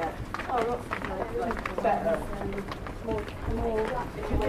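Passers-by talking, several voices overlapping, with a few scattered sharp clicks and a low rumble underneath.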